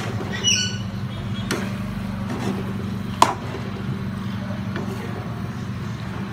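A metal spoon stirring chicken and capsicum pieces in a non-stick wok, with a few scrapes and clicks against the pan and one sharp knock about three seconds in. A steady low hum runs underneath.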